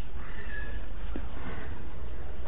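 Steady low hum of the recording, with two short high-pitched cries, one about half a second in and another about a second and a half in.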